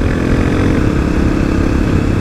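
Kawasaki KLX250SF's single-cylinder four-stroke engine running at a steady cruise. Wind rumbles on the helmet microphone underneath.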